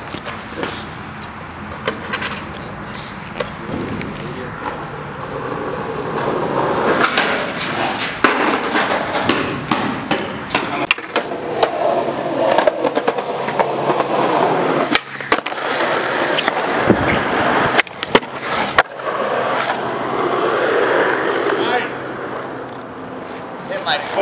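Skateboard wheels rolling on rough concrete and asphalt, with several sharp clacks of the board striking the ground spread through.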